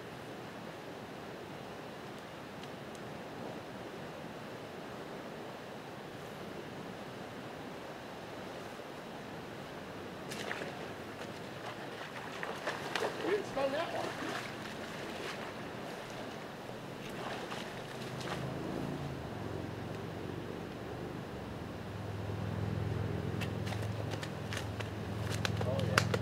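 Steady rushing of a high-running river. About halfway through come a cluster of sharp clicks and knocks. A low steady hum comes in for the last third.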